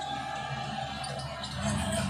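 Audio of a televised basketball game playing back, with music holding a steady note.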